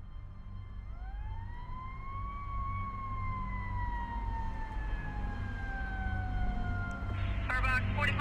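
A fire siren winds up to a peak about two seconds in, then its wail slowly falls away over a low, steady rumble that grows louder throughout.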